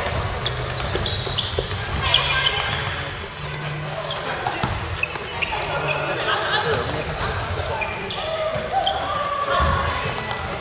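Basketball play on a wooden gym floor: the ball bouncing, short high-pitched sneaker squeaks, and players' indistinct shouts in a large echoing hall.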